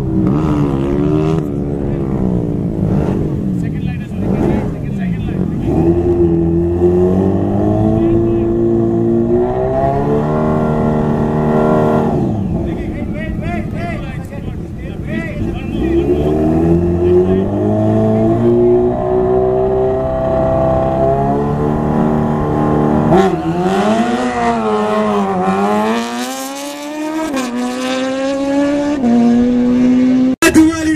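Kawasaki Ninja ZX-14R's inline-four engine revving repeatedly while the bike is held at the start line, the pitch climbing, holding high and dropping back several times.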